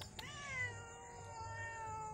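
Domestic cat giving one long meow of about two seconds, its pitch dipping slightly at the start and then held steady.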